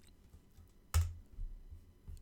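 A single computer-keyboard keystroke, a sharp click about a second in, followed by a few faint softer taps. It is the key press that launches the Spotlight top hit, Security & Privacy.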